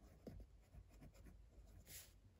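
Faint scratching of a pen writing words on lined paper in an exercise book, in short irregular strokes.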